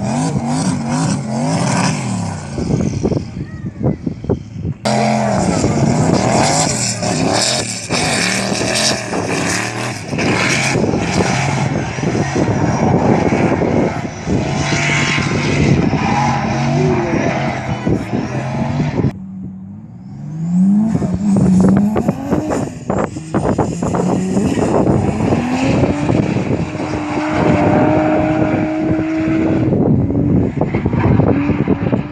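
Drift cars' engines revving hard, their pitch swinging up and down again and again as the cars slide sideways through the corners with the rear tyres spinning. There is a short lull about two-thirds of the way through, and near the end an engine is held at high revs.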